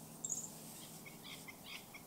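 Small bird chirping faintly: one sharp, high chirp near the start, then a quick run of short chirps in the second half.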